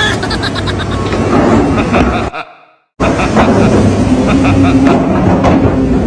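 Small tracked excavator's diesel engine running steadily, with a person's voice over it. The sound fades out about two seconds in and cuts back in half a second later.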